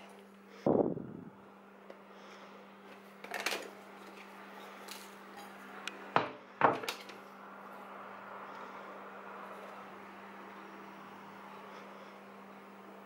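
Kitchen handling sounds as dough is cut away around an upturned ceramic plate on a silicone pastry mat: the plate knocking and scraping, a knock about a second in and two sharp clicks near the middle, over a steady low hum.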